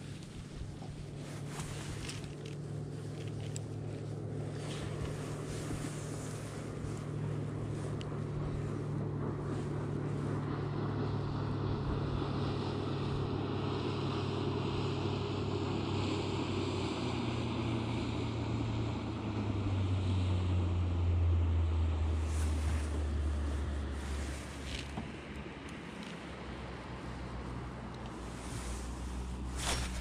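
Electric bow-mounted trolling motor humming steadily, its pitch dropping lower in steps in the second half, with wind on the microphone.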